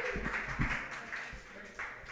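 Scattered applause from a small audience, the clapping thinning out and dying down over the two seconds.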